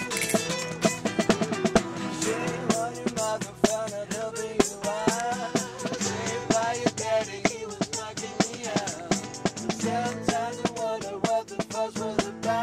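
Acoustic band playing live: a brisk percussive beat of sharp hits under a wavering, gliding melody line, with no sung words.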